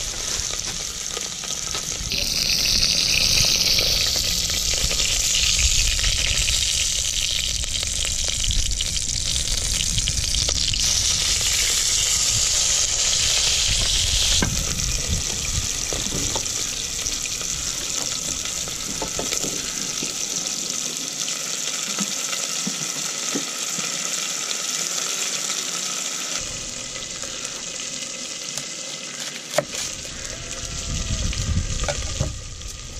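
Beef olives searing in hot oil in a cast iron cauldron over a wood-burning stove: a steady sizzle, louder for a few seconds near the start and again about halfway through.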